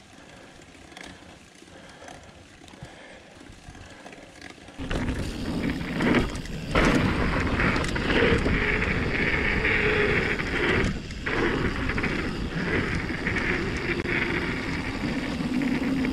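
Mountain bike riding fast down a gravel and dirt trail: tyre noise and frame rattle mixed with wind rushing over the camera microphone. It is faint at first and turns much louder and steadier about five seconds in.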